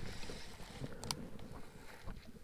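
Handling noise from a baitcasting reel and rod held close to the microphone, with a couple of sharp clicks about a second in, over a faint hiss of wind.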